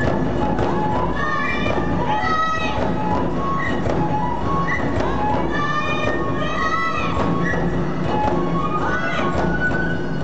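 Tachineputa festival music: big taiko drums beating steadily under a high, stepping flute melody.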